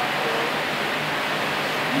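Steady, even hiss of background noise during a pause in speech.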